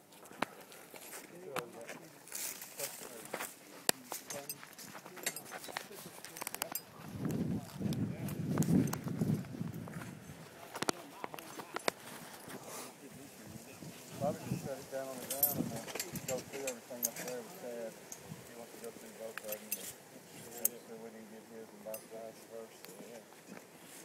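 Indistinct voices of people talking at a distance, with scattered sharp clicks and knocks and a low rumble from about seven to ten seconds in.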